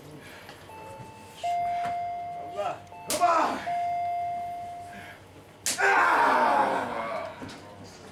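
Two sharp open-hand chops to a wrestler's bare chest, about two and a half seconds apart, each followed by shouts from the onlookers packed around the ring. Steady electronic tones sound during the first half.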